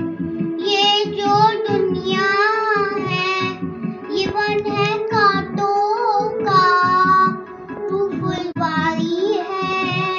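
A young girl singing a melodic song with long, wavering held notes, over a steady instrumental accompaniment.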